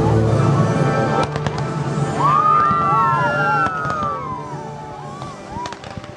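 Fireworks launching and cracking, with sharp reports about a second in, again a few seconds in and twice near the end, over the show's playback music.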